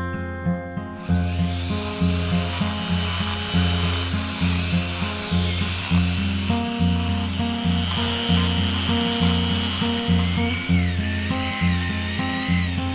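Acoustic guitar music with a steady beat, and from about a second in a die grinder whines over it as a rotary burr grinds into lignum vitae hardwood, its pitch wavering near the end.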